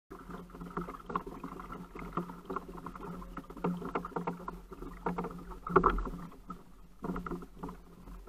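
Handling noise aboard a fishing kayak while a hooked rainbow trout is played on rod and reel: a dense run of irregular small clicks and knocks from the reel, rod and hull, with one louder knock just before six seconds in.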